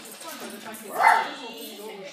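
A dog barks once, sharply, about a second in, over a low murmur of voices.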